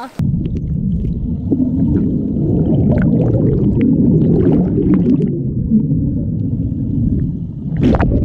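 Dense bubbling of carbon dioxide pouring up from dry ice on a pool bottom, heard underwater as a steady, muffled rumble with the high end cut off.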